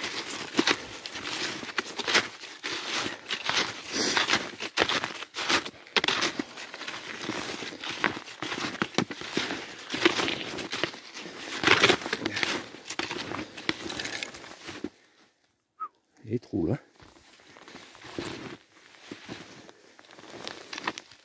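Snowshoes crunching and scuffing through deep fresh snow on a steep descent, steps coming close together for about fifteen seconds before stopping. After a short near-silent gap, a brief low sound, then softer crunching.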